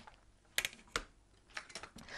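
A few light, sharp clicks and taps, a small cluster about half a second in, one about a second in and a few more near the end, as a metal-inlaid ruler and card are handled on the work table.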